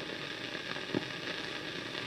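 Steady hiss and crackle of an old recording, with one faint click about a second in.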